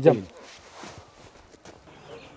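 A man says one short word, followed by faint rustling and a couple of soft clicks.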